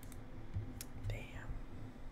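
A man whispering under his breath, with a sharp click just under a second in.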